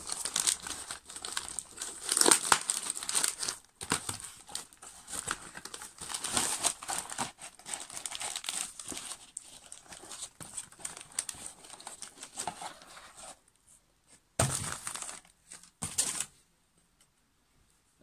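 Cardboard and crinkly paper packaging being torn open and crumpled by hand, a busy, irregular rustling and tearing. Near the end come two brief, louder bursts.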